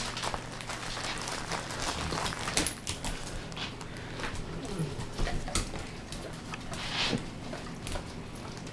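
Dogs' claws clicking and tapping on a hard vinyl floor as several dogs shuffle about, in irregular scattered ticks.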